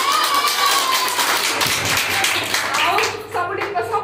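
A small group clapping for about three seconds, with one long drawn-out vocal call over the start of it; talking resumes near the end.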